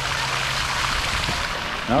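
Fountain jets splashing steadily into a stone basin, a continuous rushing of falling water.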